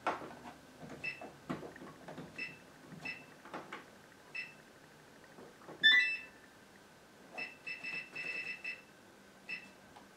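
Gorenje WaveActive washing machine's control panel beeping as its buttons are pressed in the service test mode: short high beeps about once a second, a louder multi-tone beep about six seconds in, and a rapid string of beeps a little later.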